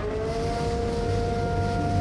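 Hurricane wind and rain over a siren-like tone that glides up in pitch and then holds steady, with a second steady tone above it, as the sound swells louder.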